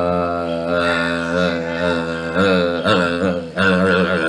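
A man's long, low vocal drone, a held 'uhhh', steady in pitch for the first two seconds and then wobbling up and down in short wavers.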